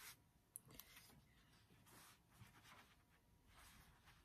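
Near silence, with a few faint short clicks and soft rustles of fabric and a small iron being handled on a table.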